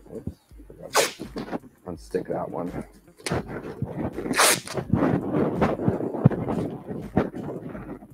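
Masking tape being pulled off its roll and handled: sharp rips about a second in and again near the middle, with a dense run of crackling and rustling in the second half.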